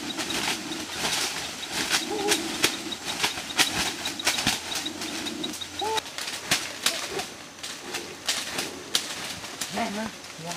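A blade repeatedly chopping into wood, sharp strikes about two a second throughout.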